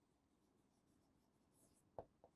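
Near silence, with the faint scratch of a marker writing on a board and a small tap at the end.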